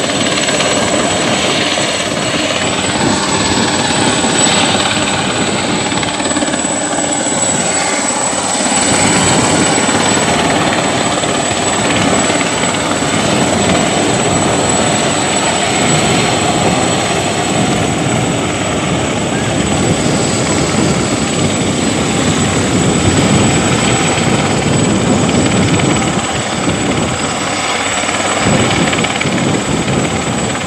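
Helicopter flying low overhead: steady, loud rotor and engine noise with a thin, steady high whine.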